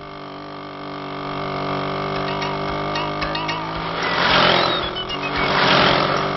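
Motorbike engine running steadily, growing louder as it approaches, with two louder rushing swells in the second half and a few bird chirps over it.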